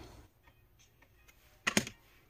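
Tarot cards being handled: faint light ticks of cardstock, then one brief card slap about 1.7 s in as a card is put down on the deck.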